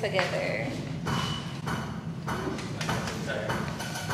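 Indistinct voices talking, with a few soft knocks over a low background hum.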